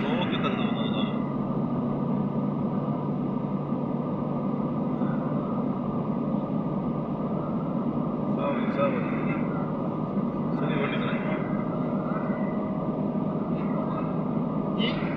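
Steady road and engine noise inside a car's cabin while driving through a motorway tunnel.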